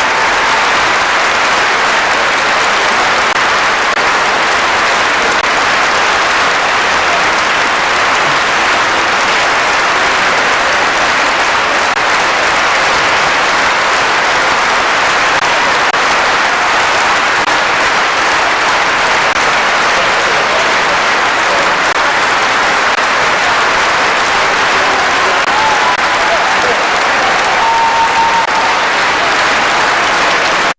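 Large concert-hall audience applauding steadily in a sustained ovation, with an unbroken wash of clapping.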